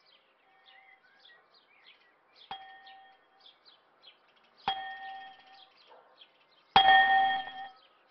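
A church bell tolling three times, about two seconds apart, each stroke ringing at the same pitch and fading; the third is the loudest and rings longest. Faint bird chirps sound throughout.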